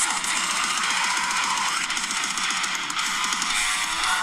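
A recorded song with guitar played back through a phone's speaker, the phone held up to a microphone.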